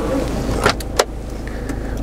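Glove box of a Land Rover Freelander being opened: a rustle as the hand reaches in, then two sharp clicks of the latch and lid about two-thirds of a second and one second in. A steady low hum from the idling diesel engine runs beneath.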